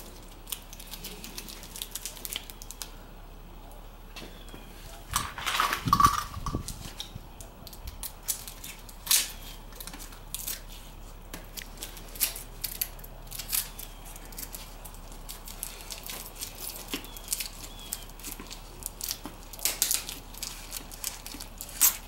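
Hand-work handling noises: scattered light clicks and taps, with a louder scraping rustle about five to six seconds in, as a brake fluid bottle and a motorcycle's handlebar brake master cylinder are handled.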